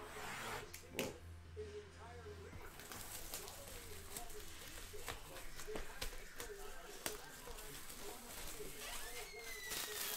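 Clear plastic shrink wrap being peeled and torn off a sealed trading-card box, crinkling and crackling with a few sharp snaps. Faint voices run underneath.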